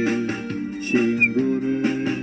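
Karaoke backing track playing an instrumental passage between sung lines: a held lead melody that steps from note to note over a steady beat.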